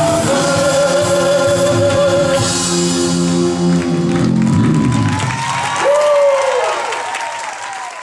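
Live rock band with electric guitars, keyboard and drums ending a song: a male singer holds a long wavering note over the closing chord. The band stops about four seconds in, and the audience applauds and cheers, with one shouted call near six seconds, before the sound fades out at the end.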